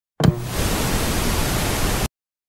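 Static noise sound effect: a loud, even hiss that starts suddenly with a brief low thump and cuts off abruptly at the end.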